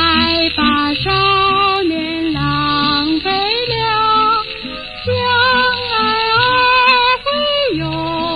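An old Mandarin pop song in waltz time playing: a wavering melody over a regularly recurring bass accompaniment.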